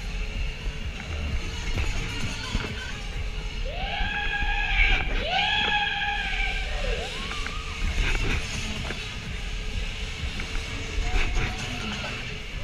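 Fairground music and ride din heard from a moving Miami ride, with a steady low rumble of wind on the microphone. About four to seven seconds in come two long, drawn-out vocal calls that rise and fall in pitch.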